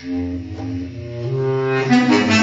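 Bass clarinet playing long held notes, coming in right at the start after a short pause and moving to a new note about halfway through.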